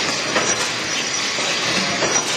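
Coil wrapping machine running as it winds stretch film around a coil: a steady noisy hiss with a thin high whine and a couple of short knocks about half a second in.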